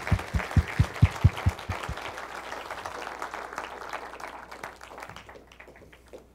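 Audience applauding, with one pair of hands close by clapping loudly about four to five times a second for the first two seconds; the applause then thins out and fades away near the end.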